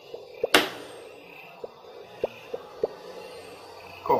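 Playing cards put down on a wooden table: a few light knocks, with one sharp, loud slap about half a second in.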